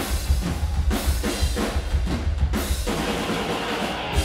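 Live rock band with the drums to the fore: a run of drum hits on a Tama kit, about four or five a second, easing off after about two and a half seconds, over a steady low bass.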